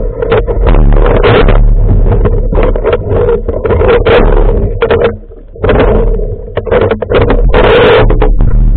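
Muffled underwater sound through a waterproof camera housing: a steady low hum broken by frequent irregular knocks and rushes of water, dropping out briefly about five seconds in.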